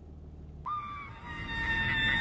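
Car tyres squealing on pavement: a high, steady screech with a few held tones that starts suddenly about two-thirds of a second in, over a low engine rumble.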